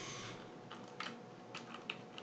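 Faint computer keyboard typing: a short run of separate keystrokes beginning under a second in.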